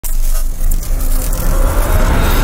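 Cinematic intro sound effect for an animated logo reveal: a loud, dense rumble with hiss that starts abruptly and thickens toward the end, building toward a boom.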